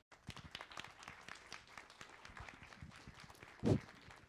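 Audience applauding at the end of a talk, a steady patter of hand claps, with one brief louder sound near the end.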